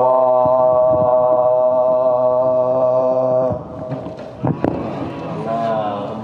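A man's voice holding one long unaccompanied chanted note at the close of a line of a Urdu marsiya (elegy) recitation, cutting off after about three and a half seconds. After it, quieter handling sounds with two sharp knocks and low voices.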